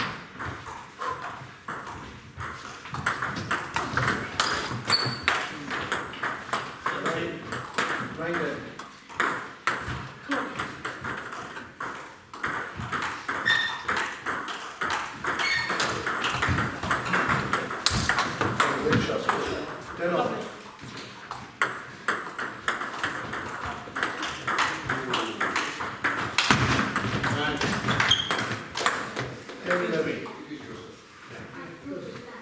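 Table tennis ball being struck by bats and bouncing on tables, many quick sharp clicks in rallies, with indistinct voices in the echoing hall.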